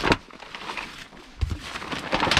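A stone block thuds as it is set down on black plastic sheeting over a silage pit, followed by a second, duller low thump about a second and a half later.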